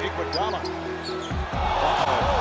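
Basketball game audio: a ball bouncing on a hardwood court over the noise of an arena crowd, with music playing along.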